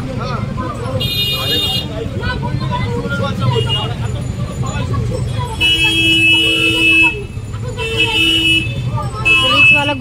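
Vehicle horns honking in a jammed street: four blasts, the longest about a second and a half, over a crowd of voices and the low rumble of idling engines.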